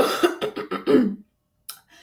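A woman coughing: it starts suddenly and lasts about a second.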